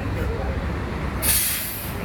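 Low rumble of a bus engine and road noise, with a sharp hiss of bus air brakes venting about a second in, lasting well under a second.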